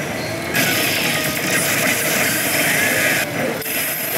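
A pachislot machine's battle-sequence sound effects over the dense, steady din of a pachinko parlour, with brief dips in the high clatter near the start and just after three seconds.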